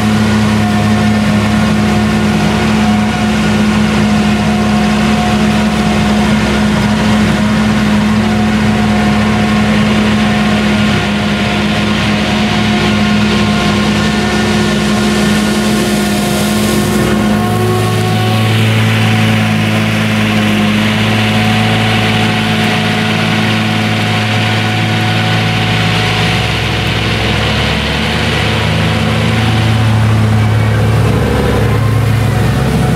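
Claas Jaguar forage harvester running under load while cutting and chopping standing triticale, together with the diesel of a Case IH tractor hauling the trailer alongside. The mix of engine notes shifts a little past halfway, and a deeper hum comes in.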